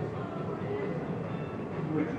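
A steady low rumbling noise, with no distinct knocks or bangs.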